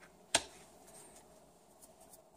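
A tarot card set down on the cloth-covered table with one sharp snap about a third of a second in.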